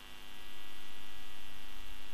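Steady electrical mains hum, a stack of even tones that fades in over the first half second and then holds level.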